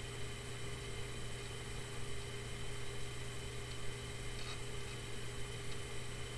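Steady low electrical hum and hiss of background room tone, with one faint brief sound about four and a half seconds in.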